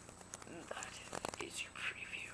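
Faint whispering with a few small clicks scattered through it.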